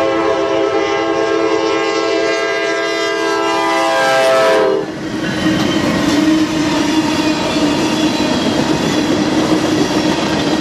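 A Norfolk Southern freight locomotive's air horn blows a long, loud chord for the grade crossing and cuts off about five seconds in. The locomotives and then tank cars roll past with a steady rumble of wheels on the rails.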